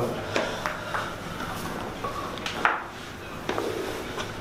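A few short sharp knocks and pops, the loudest about two-thirds of the way through, as a patient is taken back onto a padded chiropractic table in a supine thoracic adjustment.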